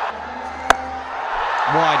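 Cricket bat striking the ball with a single sharp crack under a second in, over the steady din of a stadium crowd.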